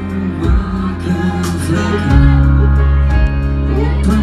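Live pop band playing a ballad: electric guitar and keyboards over deep, sustained bass notes that change about halfway through, with a male lead voice singing.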